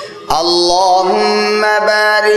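A man chanting Arabic salawat (durood) in a melodic, drawn-out style, in long held notes that step between pitches. The chanting starts after a short quiet gap about a third of a second in.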